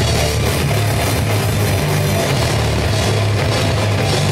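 Live heavy rock band playing loud: distorted guitar, bass and a drum kit in a dense, continuous wall of sound with a heavy low end.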